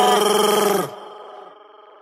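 A reggaeton song's voice holding one long, slightly wavering note that cuts off about a second in, leaving a fading echo.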